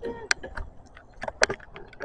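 A bicycle rattling as it rolls over pavement, with a few sharp clicks at uneven intervals; the loudest is about a second and a half in.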